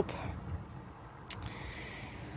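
Quiet outdoor background: a faint, steady low rumble, with one short click just over a second in.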